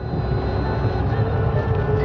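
Boat motor running with a steady low rumble, with a few faint held tones above it.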